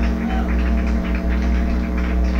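A band's sustained electronic drone between songs: held tones over a deep steady bass note, with scattered faint clicks above it, heard through the soundboard feed.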